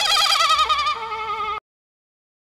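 A single high wavering tone with strong vibrato, like an eerie wail, held and then cut off suddenly into dead silence about one and a half seconds in.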